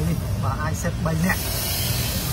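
A person talking, then about a second of hiss in the second half.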